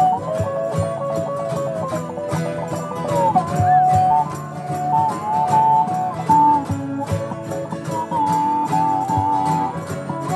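Live acoustic folk band in an instrumental break: a harmonica plays the lead in held two-note chords over a strummed acoustic guitar. Jingling percussion keeps a steady beat.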